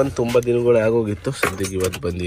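A man's voice talking, with a few short high clinks or rattles in the second half.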